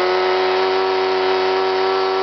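YS FZ70-S supercharged four-stroke glow engine turning its propeller at a steady 60% throttle, the five-second 60% step of a computer-controlled throttle step test; its note holds one constant pitch.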